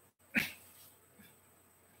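A single short, sharp burst of a man's breath or voice about a third of a second in, fading quickly into faint room tone.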